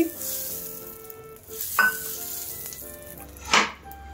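Ghee sizzling as it is drizzled and spread over a hot nonstick grill pan. The sizzle is loudest at the start and dies down over the first second or so, with a short fresh burst of sizzle near the end.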